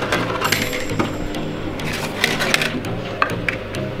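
Dry lasagne sheets clicking and clattering against each other and a cardboard box as they are taken out, with irregular sharp clicks. Background music plays underneath.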